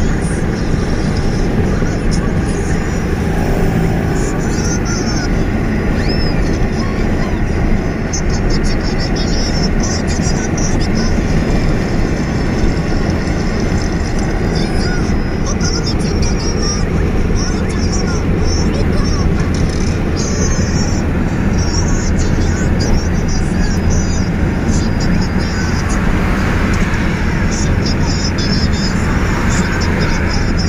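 Inside a car driving at highway speed: a steady engine drone under constant road and wind noise.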